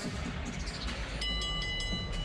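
Arena crowd din, then about a second in a boxing ring bell rung in quick strokes for about a second, a metallic ringing of several steady pitches that signals the result is about to be announced.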